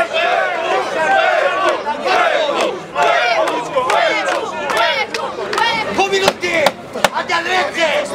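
Boxing crowd shouting and calling out over one another, many voices at once. A few sharp cracks come through between about five and seven seconds in.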